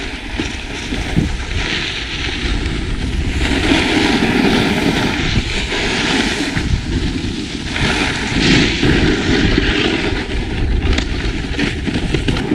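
Snowboard sliding and carving over packed snow at speed, with wind rushing over the microphone: a steady rumble and hiss that swells and eases with each turn.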